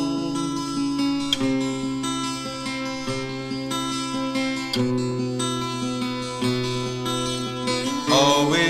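Instrumental break in a folk song: acoustic guitar strumming chords, the chord changing about every one and a half to two seconds, with no voice.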